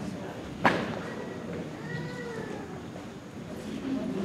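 Hall ambience with a low murmur of people and one sharp knock about half a second in, the loudest sound here. A faint, drawn-out voice rises and falls in pitch in the middle.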